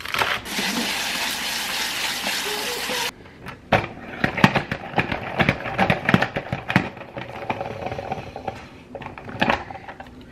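Tap water running steadily into a plastic salad spinner of chopped romaine lettuce, cut off abruptly about three seconds in. Then irregular sloshing and small plastic knocks as the lettuce is washed in the water-filled spinner.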